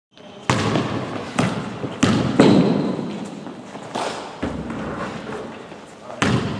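A basketball bouncing on a sports-hall floor: about six irregularly spaced thuds, each followed by an echo in the hall.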